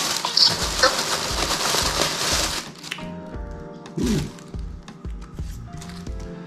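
A thin plastic carrier bag rustling loudly as it is pulled open and reached into, stopping about two and a half seconds in. After that, quieter background music with held notes.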